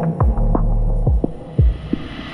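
Drum and bass music: spaced kick drums over a held sub-bass, with a hissing noise build growing louder towards the end as the busier percussion drops away.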